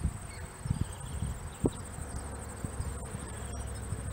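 Insects trilling in a steady, high-pitched, finely pulsing chirr, over a low rumble with a few soft irregular thumps.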